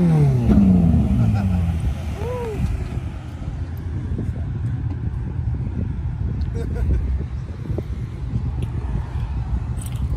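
A car engine revs and its note falls away over the first two seconds as the car pulls off, then a steady low rumble continues under faint background voices.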